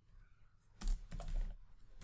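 Typing on a computer keyboard: a quick run of keystrokes begins a little under a second in, after a quiet start.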